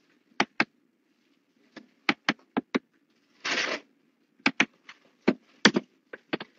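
Irregular, sharp clicks in small groups, typical of typing on a computer keyboard. A brief rustle comes about three and a half seconds in.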